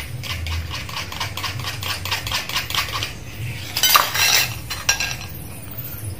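A spoon stirring in a cup of thick guava juice, clinking quickly and repeatedly against the cup's sides, with a louder clatter about four seconds in.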